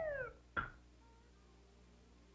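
Cartoon sound effect of a cat's yowl, its pitch falling away and ending within the first third of a second, followed by one short squeak about half a second in.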